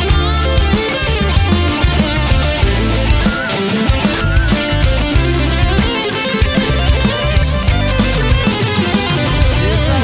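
Instrumental break of a pop-rock band recording: an electric guitar plays a lead line with bent notes over bass and drums.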